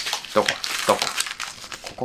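Torn paper envelope with its plastic film crinkling and rustling in the hands as the pieces are sorted through, with a dense run of small crackles throughout.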